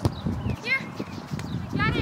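Players shouting on an open soccer field: two high-pitched calls, one under a second in and one near the end, over a low outdoor rumble, with a sharp knock at the start, like a ball being kicked.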